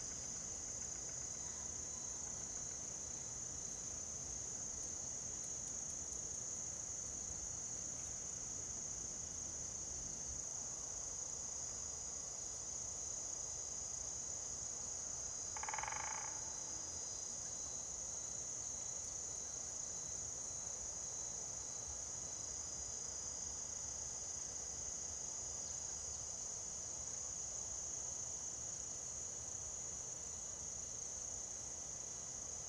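A steady, high-pitched chorus of crickets trilling without a break. A single short bird call comes about halfway through.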